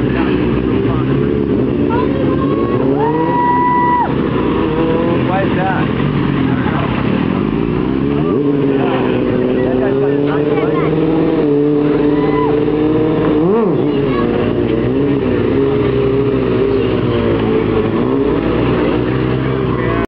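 Several sport motorcycle engines revving during stunt riding, their pitch repeatedly rising and falling as the riders blip the throttle, with one engine held at high revs for about a second early on.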